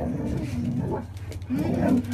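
Huskies vocalizing as they greet a person, in two bouts, the louder near the end, mixed with a woman's murmured 'mm-hmm'.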